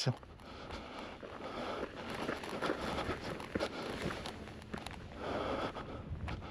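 Footsteps on a dry, gravelly dirt path, walking uphill, with small crunches and scrapes.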